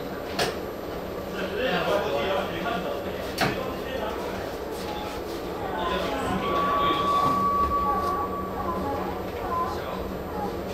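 Inside the driving cab of an EMU800 electric multiple unit moving slowly: indistinct voices over a steady low hum, with two sharp clicks, one near the start and one about three and a half seconds in. A steady high beep sounds for about two seconds past the middle.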